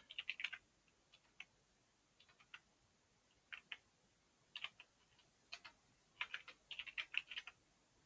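Faint computer-keyboard typing in short bursts of keystrokes with pauses between: a quick run at the start, a few scattered keystrokes, then a longer run about six seconds in.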